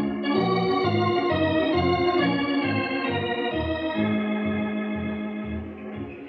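Organ music interlude: sustained chords over a moving bass line, settling onto a long held chord in the second half and fading slightly near the end.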